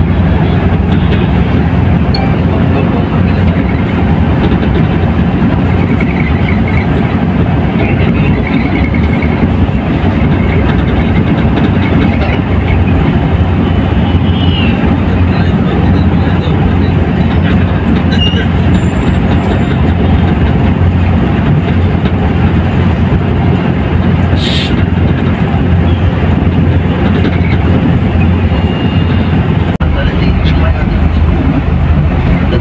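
Steady engine rumble and road noise of a Volvo coach heard from inside the cabin while it drives at highway speed. A single sharp click comes about three-quarters of the way through.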